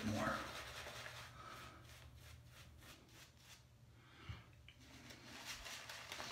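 Synthetic shaving brush working lather over two days' stubble: a faint scratchy rubbing in quick strokes, about three or four a second.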